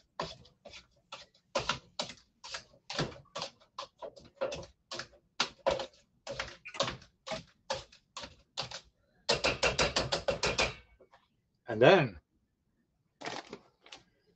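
Hand masher working through soft mashed sweet potatoes in a pot, knocking against the pot about three times a second, then a quicker flurry of strokes near the end.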